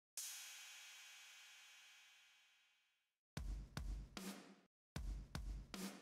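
Music sting: a cymbal crash rings out and fades over about three seconds, then two short drum-kit phrases with a heavy bass drum follow. It marks a correct answer.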